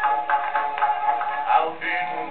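An early acoustic 78 rpm record of a male singer with accompaniment, a music hall song, played through a horn gramophone. The sound is thin and narrow, with nothing above the upper middle range.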